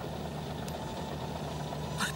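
A steady low hum with no speech, and one faint click about two-thirds of a second in.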